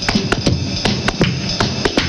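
A rhythm-and-blues band playing an instrumental intro vamp, with sharp drum beats several times a second over a low bass line.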